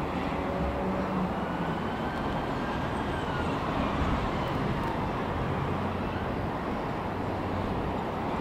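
Vintage chairlift running, a steady low rumble from the cable and the chair's running gear, with a faint thin whine that glides up and down during the first few seconds.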